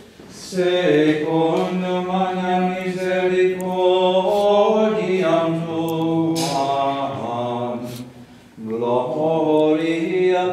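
Liturgical chant sung in long, sustained notes that step between pitches. It starts about half a second in, breaks off for a breath at about eight seconds, then resumes.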